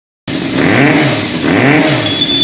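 Kawasaki GPZ400's air-cooled four-cylinder engine revved twice through an aftermarket RPM exhaust, each blip rising and falling in pitch.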